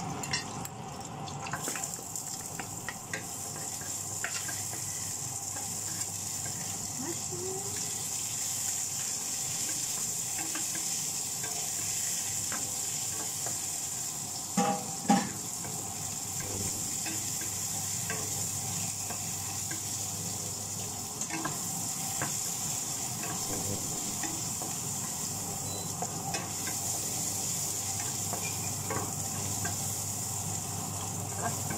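Food stir-frying in a hot pan: a steady sizzle with a spatula clicking and scraping against the pan, and two louder knocks about halfway through.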